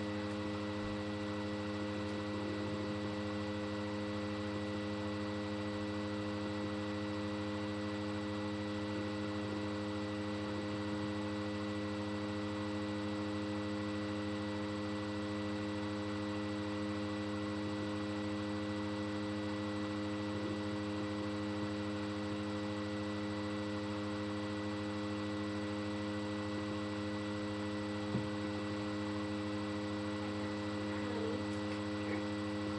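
A steady electrical hum made of several constant tones, unchanging throughout, with one faint click near the end.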